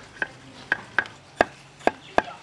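A large knife shaving a thin bamboo stick to a sharp point against a round wooden chopping block: about six short, sharp knocks at uneven intervals, the strongest in the second half.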